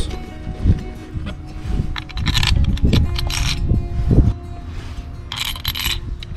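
Background music, with a few short metallic clinks and scrapes as the ignition coil pack's Torx screws are set into their holes and started by hand.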